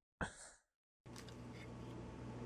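A man's short, breathy exhale just after the start, followed by a moment of silence. From about a second in, a faint steady hiss with a low hum slowly grows louder.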